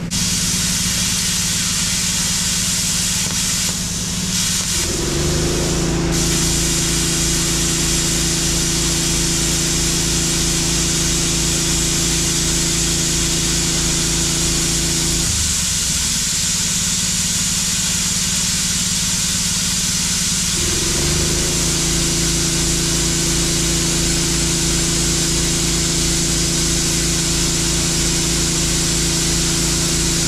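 VEVOR Cut 50 plasma cutter cutting steel: a loud, steady hiss from the torch with a low hum underneath. The hum changes note about five seconds in and again for a few seconds in the middle.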